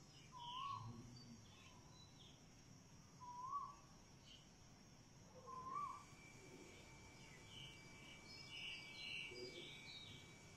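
Faint outdoor ambience with birds calling: three short whistled notes that rise and fall, about two and a half seconds apart, then a cluster of higher chirps near the end.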